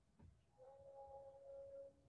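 Near silence, with a faint held tone, a lower and a higher pitch together, starting about half a second in and fading near the end.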